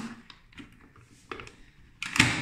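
A few short plastic clicks of fingers pressing the keypad buttons on a smart moulded-case circuit breaker, the sharpest about a second and a half in.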